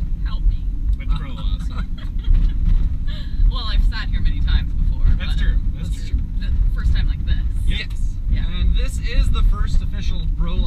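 Steady low rumble of road and engine noise inside the cab of a moving truck, with people talking over it.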